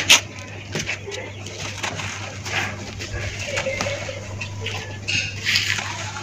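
Dry red dirt cylinders crushed in the hands, with a sharp crunch at the start and then crumbling, crackling and loose dirt pouring down, and another crumbling burst near the end. A steady low hum runs underneath.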